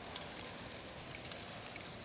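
Faint, steady mechanical background from running LEGO Great Ball Contraption modules: a light, even pattering of plastic balls and LEGO machinery, with no distinct single knock standing out.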